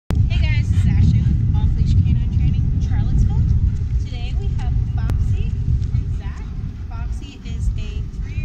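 Heavy low rumble of wind buffeting an outdoor microphone, with many short, high, pitched calls scattered through it.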